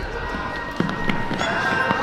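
A step team's shoes striking a hardwood gym floor: a few sharp stomps, one a little under a second in and another about halfway through the second, over crowd chatter.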